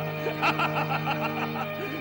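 A man's gloating, villainous laughter trailing off in short bursts over a sustained background music score.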